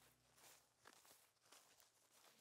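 Near silence with faint footsteps on a dry dirt trail, about two steps a second.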